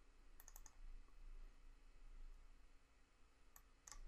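Faint computer mouse clicks: a quick cluster of clicks about half a second in and two more near the end, with near silence between.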